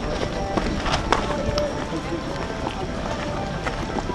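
Crowd of people chatting and walking outdoors, with a steady hubbub of overlapping voices and scattered sharp footstep clicks.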